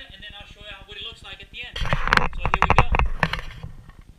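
Camera being handled and moved: a loud burst of knocking, bumping and rustling on the microphone lasting about two seconds, starting near the middle.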